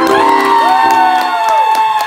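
Audience clapping and cheering with long whoops that rise and fall, as the song ends.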